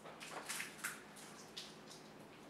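Wooden spring clothespins being handled and clipped onto fingers: a quick cluster of soft clicks and rustles about half a second in, and another click near the end.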